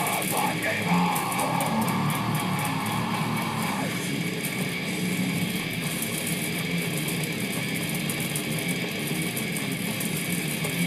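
Electric guitar playing fast death metal riffs. The original song plays along faintly from laptop speakers, picked up with the guitar by a low-quality webcam microphone.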